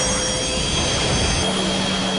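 Anime sound effect of two Rasengans colliding and blasting: a loud rushing roar with a steady high whine running through it, and a low hum joining about halfway through.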